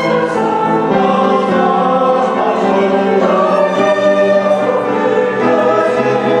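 A choir singing held, overlapping notes, accompanied by two violins and piano.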